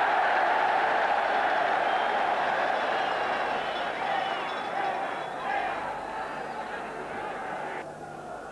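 Large stadium crowd noise from an old match broadcast, loud at first and slowly dying down, with a sudden drop near the end.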